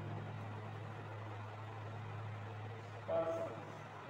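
Steady low hum under an even background noise, with a short voiced sound, a brief murmur from a man, about three seconds in.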